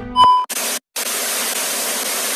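TV static sound effect: a short, loud beep, then a steady hiss of static that cuts out briefly about a second in.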